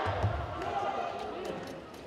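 Dull thud of a taekwondo fighter going down onto the foam mat, heard over shouting voices, followed by a few light clicks.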